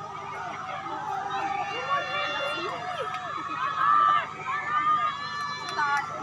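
A crowd of spectators shouting and cheering on runners in a footrace, many voices calling over one another, loudest about four seconds in.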